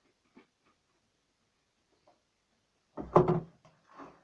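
Household objects being handled: a few faint taps, then a short clatter of knocks about three seconds in.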